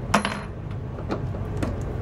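Small metal hardware being handled: one sharp metallic clink with a short ringing just after the start, then a few fainter clicks and taps.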